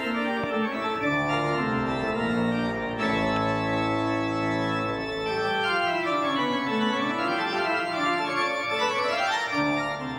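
Large pipe organ, a Kegg-built instrument, playing full sustained chords. In the second half a run of notes steps down and then climbs back up.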